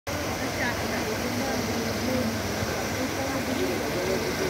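People talking faintly over a steady outdoor rushing noise.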